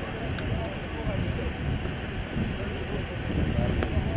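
Indistinct voices of people talking at a distance, over a steady low rumble.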